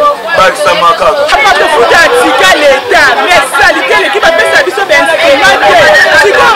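Speech only: a man talking to the camera, with other voices chattering around him.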